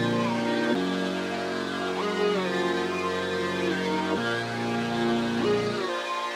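A melodic electronic sample loop playing back, with chord changes and some gliding notes, while a low-cut EQ is swept to remove its bass and sub-bass. The low end drops out under a second in, partly comes back around four seconds in, and thins out again near the end.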